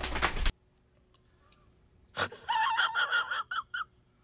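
A man's strained, high-pitched gasping whimper broken into short rapid pulses, about two and a half seconds in, after a moment of dead silence and a single sharp click.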